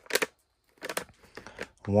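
Foil-wrapped plastic packaging of a fireworks pack crinkling in a series of short scratchy rustles as a hand presses and handles it.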